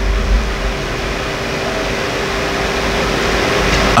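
Steady hiss with a low hum and a faint steady tone, like air conditioning or equipment noise, swelling slightly toward the end.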